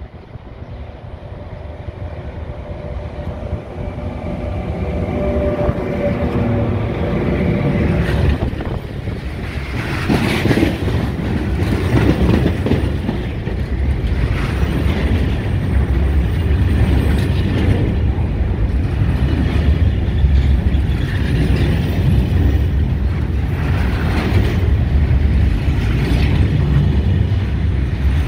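Medway Class 5600 (Siemens EuroSprinter) electric locomotive and its container freight train passing close by: the sound grows louder over the first several seconds as the train approaches, then the loaded container wagons roll past with a steady heavy rumble and repeated clacking of the wheels.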